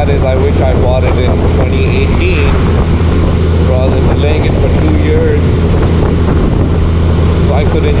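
Honda Gold Wing Tour's flat-six engine cruising at a steady speed, a constant low drone mixed with road and wind noise on the microphone. A voice comes through faintly at times over it.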